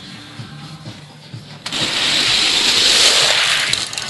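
Die-cast Hot Wheels cars running down a six-lane plastic raceway, a loud rushing rattle of small wheels on plastic track. It starts suddenly a little before halfway and lasts about two seconds.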